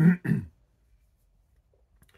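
An elderly man briefly clearing his throat, a short rasp in the first half second.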